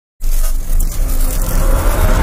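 Cinematic intro sound effect: a loud, steady low rumble with a hiss over it, starting abruptly a moment in.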